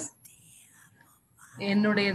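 An elderly woman speaking into a microphone, pausing for about a second and a half with only a faint breath before her speech resumes near the end.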